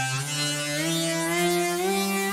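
Buzzy driven synthesizer lead holding notes and stepping up in pitch a few times, sliding briefly between notes. A key-tracking EQ band boosts its low fundamental and follows each new note.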